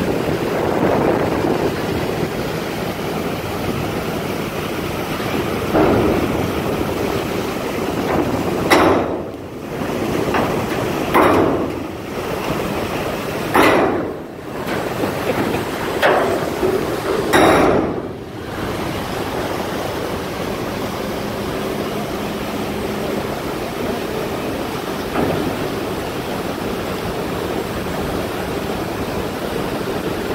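Steady rush of river water pouring through the dam gate below a jammed barge. Wind buffets the microphone in about five brief gusts in the middle.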